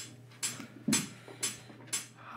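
Count-in before the song's playback: sharp, evenly spaced clicks, about two a second, keeping the beat over a faint low hum.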